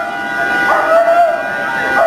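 A dog barking in drawn-out, arching yelps, the longest a little under a second in, over steady high tones in the background.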